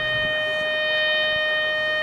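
Marching band holding one long, steady note at a single pitch during its field show.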